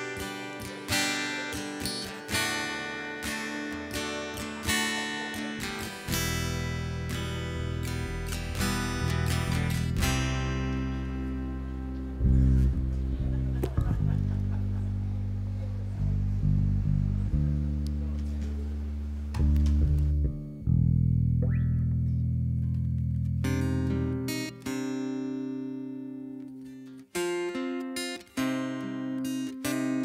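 Acoustic guitar picked note by note, with long held low bass notes joining about six seconds in and dropping away near the end: a band checking and warming up its instruments before a song, not yet playing it.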